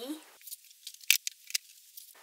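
Book handling noise: a few short, sharp clicks and rustles as one book is put away and another picked up, the loudest about a second in and again about half a second later.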